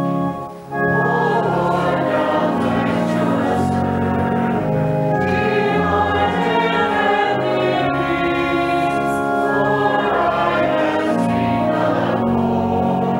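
Organ playing, a short break, then a hymn sung by many voices with the organ accompanying, starting about a second in.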